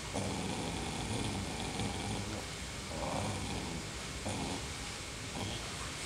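A dog growling softly on and off, low and quiet, with a slightly clearer stretch about three seconds in.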